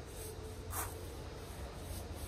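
Paintbrush stroking water-based varnish onto a wooden bellyboard: a soft brushing swish a little under a second in, over a faint low background hum.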